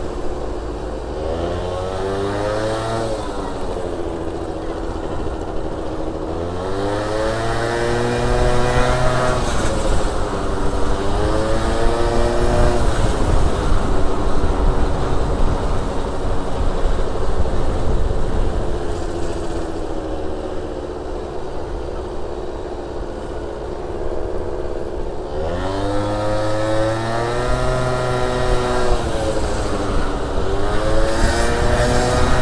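Gilera Stalker 50 cc two-stroke scooter engine in city riding, revving up and easing off. Its pitch climbs about four times: near the start, around seven and eleven seconds in, and again near the end, with steadier running between.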